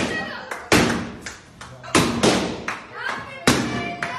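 Several loud, sharp strikes at uneven intervals, about a second apart, each ringing briefly, with excited voices between them.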